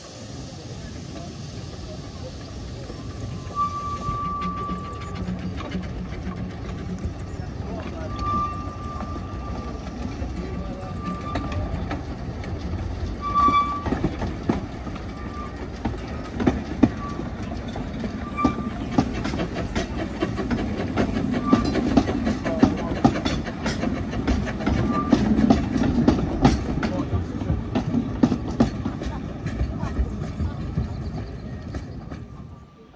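Two narrow-gauge steam locomotives, the green 'Alpha' leading, double-heading a train of wooden coaches past, growing louder as they near. Wheels and couplings make dense clicks and clanks, with short high-pitched tones in the first half.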